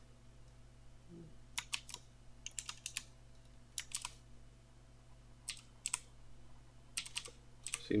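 Computer keyboard keys clicking in short bursts of a few quick presses, about six bursts spaced a second or so apart, over a faint steady low hum.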